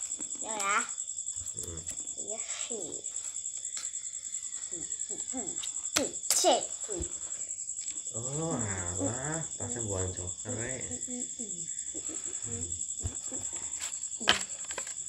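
Crickets chirping in a steady, high-pitched trill that never lets up, under low voices and a couple of sharp clicks about six seconds in.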